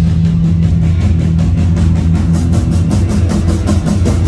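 Live rock band playing a passage with no singing: electric guitar over heavy bass and a fast, steady drum beat.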